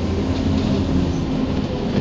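Steady engine rumble and road noise of a moving London bus, heard from inside the cabin, with a low, even engine note.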